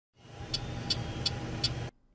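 Intro sound effect for a logo animation: a rumbling noise with four evenly spaced ticks, about three a second, that cuts off suddenly just before the end.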